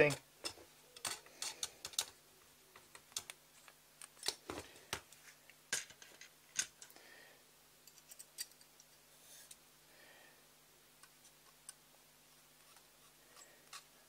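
Irregular small clicks and taps of a hex screwdriver and metal screws and standoffs against a carbon-fibre quadcopter frame as the frame screws are tightened, fewer in the second half, over a faint steady low hum.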